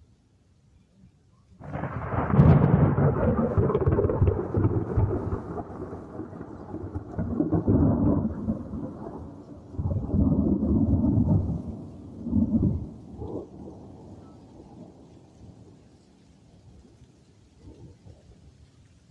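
Thunder: a sudden loud crack about two seconds in, then rolling rumbles that swell again several times and die away over about twelve seconds.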